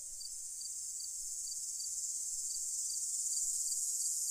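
Crickets chirping: a steady high trill with faint regular chirps about three times a second, slowly growing louder.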